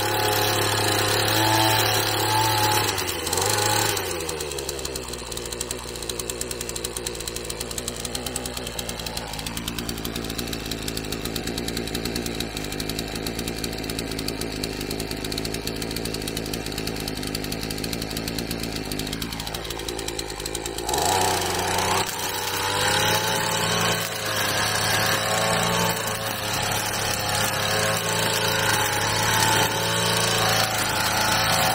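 Gasoline brush cutter engine running at high revs, dropping to idle about four seconds in, idling steadily, then throttled back up to full speed near the twenty-second mark, its note wavering under load as it cuts.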